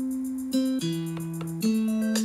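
1010music blackbox sampler playing triggered sequences: a held low bass note that steps to a new pitch about every second, with short plucked notes over it. More plucked notes join near the end, as the playing sequences are switched from the NeoTrellis pad controller.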